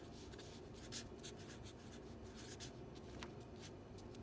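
Felt-tip marker writing on paper: faint, irregular scratchy strokes of the tip across the sheet as words are written.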